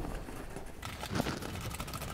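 Cardboard packaging rustling and scraping as it is handled, with a few light knocks a little past halfway.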